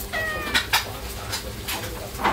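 Gray-and-white domestic cat calling: a short, slightly falling chirp near the start, then a few short, sharp clicks.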